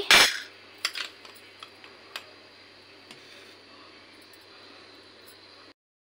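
Sugar tipped from a glass into a pan of milk with a short scrape of a metal spoon right at the start, then a few light spoon clinks over a faint steady hiss, which cuts off shortly before the end.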